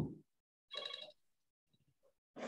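A man's voice trails off at the start, then a faint, brief electronic ringing tone sounds once, lasting about half a second.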